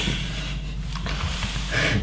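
A man's breathy, snort-like exhale through the nose, a stifled laugh.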